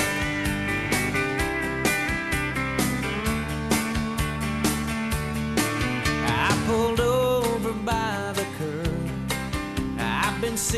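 Instrumental break in a country song: a band with drums keeping a steady beat under guitars, and a lead line bending and sliding in pitch.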